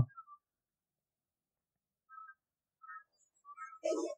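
Near silence, broken by a few faint, short high-pitched chirps from about two seconds in and a brief low sound just before the end.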